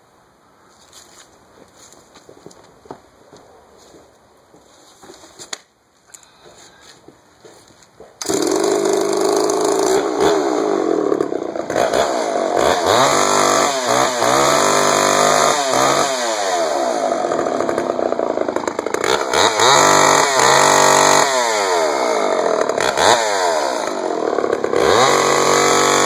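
Homelite XL-923 two-stroke chainsaw starting about eight seconds in, after some faint handling sounds, then running on its first test run and being revved up and down over and over.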